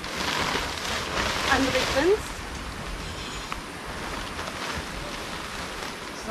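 Synthetic fabric of a Quechua Arpenaz Fresh & Black tent's flysheet rustling as it is pulled over and smoothed on the pitched inner tent, loudest in the first two seconds, then a quieter rustle.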